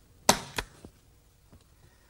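Framer's point driver firing a flat point into the inside edge of a picture frame to hold the glass, print and hardboard backer in place: one sharp snap about a quarter second in, with a fainter click just after.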